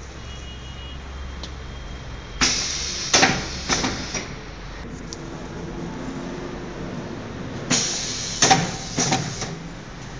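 Semi-automatic cellophane overwrapping machine running through two wrapping cycles about five seconds apart. Each cycle is a sudden rushing hiss followed by a few sharp metallic clacks, over a low steady hum.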